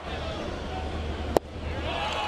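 Steady ballpark crowd noise, then about a second and a half in a single sharp pop as the pitched baseball smacks into the catcher's mitt on a swing and miss.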